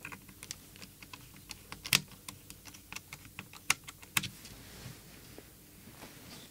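Irregular small clicks and taps of hands and small tools handling the opened plastic radio-transmitter case and its internals, with two sharper clicks about two seconds in and near the middle.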